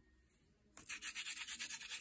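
A hand rubbing quickly back and forth over the painted door sign's surface, a dry scratchy scrubbing that starts under a second in and lasts about a second and a half.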